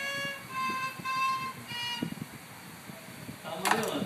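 A violin played by a child: a few held bowed notes over the first two seconds, then the playing stops. A short loud burst near the end is the loudest moment.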